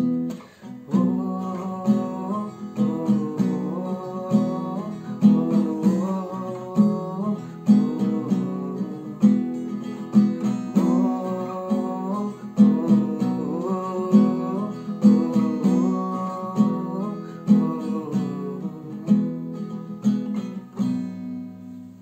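Acoustic guitar with a capo, strummed in a steady repeating pattern through an instrumental closing passage, dying away just before the end.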